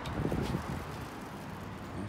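Low rumbling handling or wind noise on a phone microphone as it is carried, strongest in the first half second, over a steady hiss.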